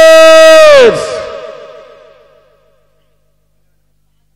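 A man's long, loud shouted slogan call through a PA microphone, held on one high pitch for about a second and then falling off, its echo dying away over the next two seconds. Then silence.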